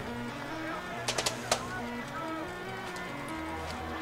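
Football stadium ambience: crowd noise with music playing underneath, and a few short sharp clicks or knocks about a second in.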